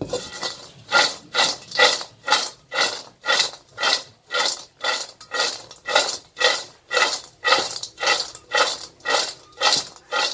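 Dried wild seeded banana pieces rattling and sliding in a metal wok as it is tossed over and over, about twice a second: dry-roasting them until golden.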